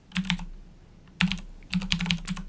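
Computer keyboard typing the word 'metadata': a few keystrokes just after the start, then a quicker run of keystrokes in the second half.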